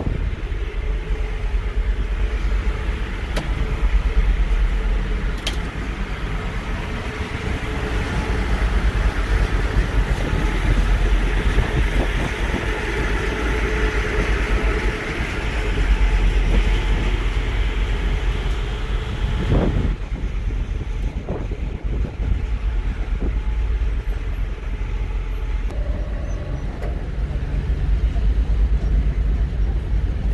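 Steady low engine rumble of a high-speed ferry under way, with a wash of broad background noise. The noise thins out about two-thirds of the way through.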